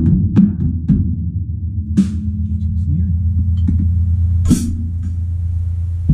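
Acoustic drum kit played with a fast, steady double bass pedal roll on the kick drum, a few stick hits over it, and a cymbal crash about four and a half seconds in.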